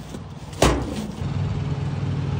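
A single metal bang about half a second in, the hinged lid of a steel rest-area trash bin dropping shut. Then a steady low diesel truck idle comes in after about a second.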